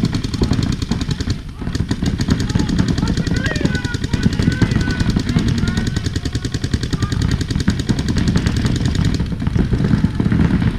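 Paintball markers firing rapid streams of shots, a dense, continuous rattle with a brief lull about a second and a half in.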